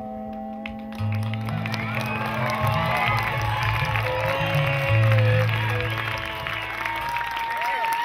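Bluegrass band ending a song on long held notes, fiddle and upright bass sustaining under the chord, while the audience applauds and cheers. The sound grows louder about a second in.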